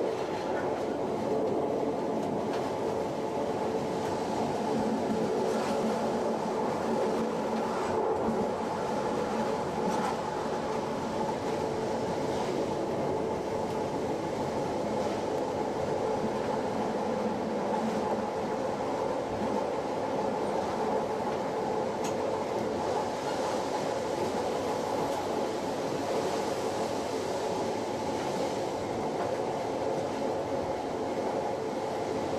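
Metre-gauge electric train running steadily along the track: a constant rumble of wheels and running gear, with a few faint clicks now and then.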